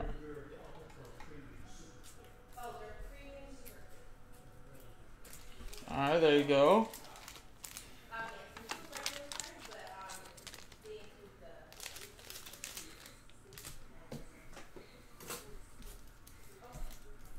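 Foil trading-card pack wrappers and cards crinkling and crackling as they are handled. A brief, wavering man's vocal sound comes about six seconds in, with faint murmured speech.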